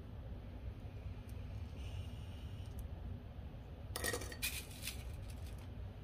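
A quick cluster of small clicks and clinks lasting about a second and a half, starting about four seconds in, over a low steady room hum: plastic sewing clips being handled and snapped onto the edge of the fabric.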